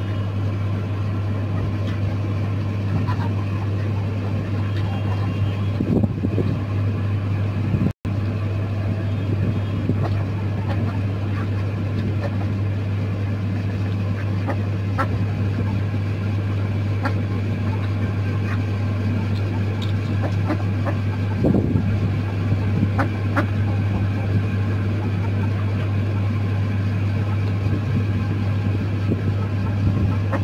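A steady low hum, like a motor running, with scattered small taps and clicks as ducks and chickens peck at food in trays and bowls.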